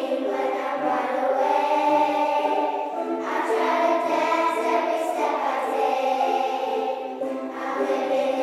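A children's choir singing in unison, accompanied by ukuleles and wooden Orff xylophones played with mallets.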